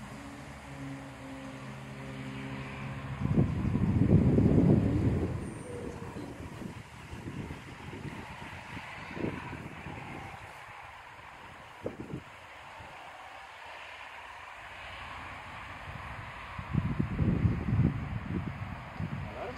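Wind buffeting the microphone in two loud rumbling gusts, one about three seconds in lasting a couple of seconds and another near the end, over faint outdoor background. A steady low engine-like hum runs for the first three seconds and then stops.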